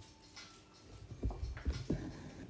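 A dog whimpering softly, a few short faint whines.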